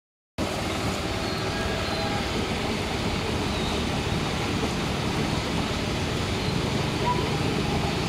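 Steady rushing of water churned by a swimming pool's underwater bubbler jets, mixed with a child's swimming splashes.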